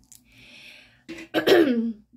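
A woman clears her throat once, loudly, a little over a second in.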